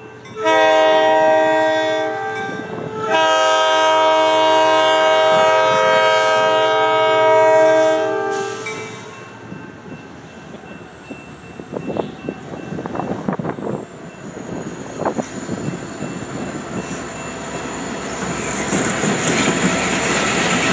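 Diesel locomotive of an MBTA commuter train sounding its multi-note air horn for a grade crossing: a blast of about two seconds, then a long blast of about five seconds. After the horn stops the approaching train rumbles, with wheel clacks over the rails, and grows louder as the locomotive passes close near the end.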